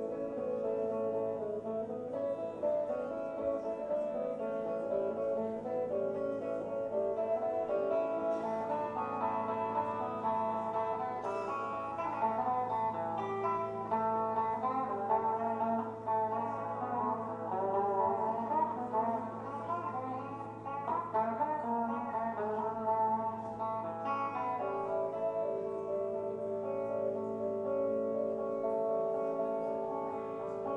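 Acoustic guitar played live, plucked notes ringing one after another over a steady low hum.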